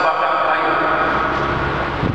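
A man's voice speaking into a microphone, drawing out long, held syllables.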